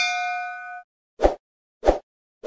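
A single metallic bell-like clang, ringing with several tones and fading, cut off abruptly just under a second in. Two short dull thumps follow in the second half.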